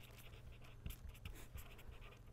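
Faint scratching of a pen writing on paper in many short strokes, over a low steady hum.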